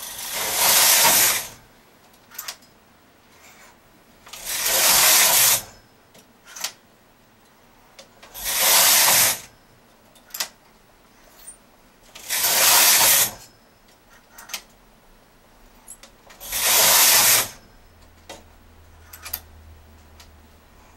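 Knitting machine carriage pushed across the needle bed five times, about every four seconds, each pass a rushing hiss lasting a second or so. Light clicks between passes come from needles being pushed by hand while working reverse short rows.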